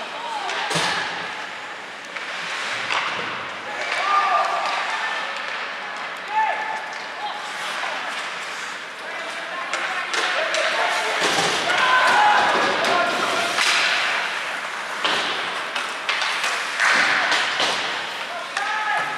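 Ice hockey play in a rink: sharp cracks of sticks on the puck and the puck hitting the boards, the loudest about a second in, with skate scrapes and scattered shouts from players and spectators.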